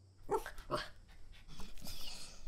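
Dog giving two short barks about half a second apart, followed by fainter sounds near the end.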